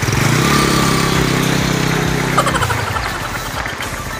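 An engine running steadily, then dying away about two and a half seconds in.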